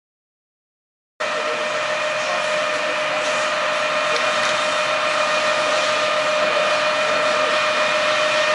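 Harrison M400 engine lathe running: a steady mechanical whine, several even tones over a hiss, that begins abruptly a little over a second in and holds unchanged.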